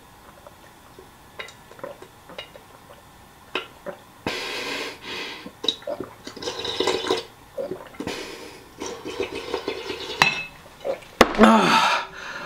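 Milk being gulped and slurped from a large clear bowl tipped up to the mouth: quiet swallows at first, then longer, louder slurps from about four seconds in. Near the end the bowl is knocked down onto the counter, followed by a gasp for breath.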